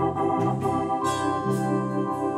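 Gospel organ playing sustained chords over a bass line that steps from note to note.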